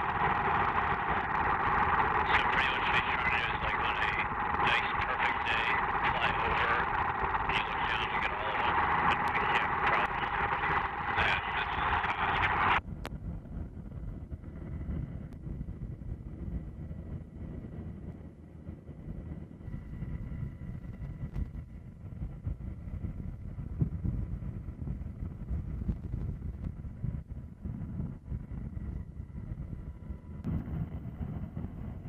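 Loud radio static with faint, garbled chatter, thin and hissy with a steady whine in it. About thirteen seconds in it cuts off abruptly, leaving a quieter low, steady rumble.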